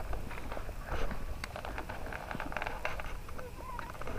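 Irregular light clicks and rustles of fishing tackle being handled, rod and reel, by someone standing in wet, grassy swamp.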